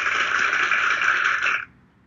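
A steady hiss-like burst of noise lasting about two seconds, starting and stopping abruptly.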